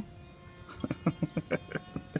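A man laughing: a run of short ha-ha pulses, about six a second, starting about a second in.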